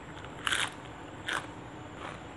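Person chewing a mouthful of raw herbs and sticky rice, with two crisp crunches about a second apart as the fresh leaves are bitten.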